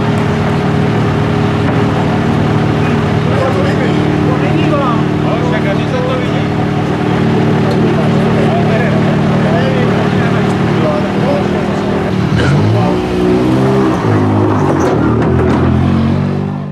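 Ford Fiesta rally car's engine idling steadily, then revved, its pitch rising and falling a couple of seconds before the end as the car pulls away.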